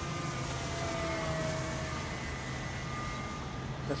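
Thin distant whine of a Durafly Spitfire foam RC model's electric motor and propeller flying at full power, steady in level and shifting slightly in pitch.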